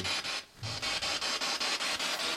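Spirit box sweeping through radio stations: a rapid stream of static, chopped about ten times a second, with a brief dropout about half a second in.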